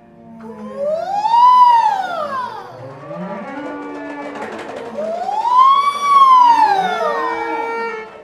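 A singer's voice sliding up and back down in a long arching wail, twice, like a siren, over lower sliding and held tones from the improvising instruments.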